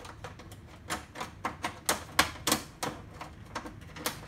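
Plastic side cover of an HP LaserJet Pro 400 printer being worked loose by hand: about a dozen sharp, irregular plastic clicks and snaps, loudest just past the middle.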